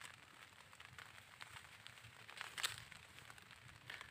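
Near silence: faint outdoor background with scattered small clicks, and one sharper click a little past halfway.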